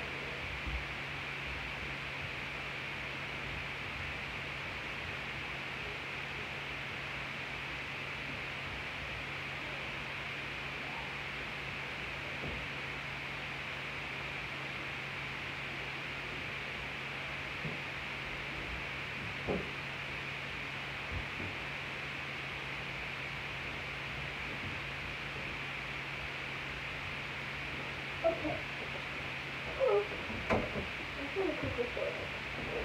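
Steady room hiss with a low, even hum underneath, broken only by a few faint clicks, with a few more brief faint sounds near the end.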